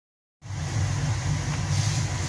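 A steady low machine hum with a hiss, starting about half a second in.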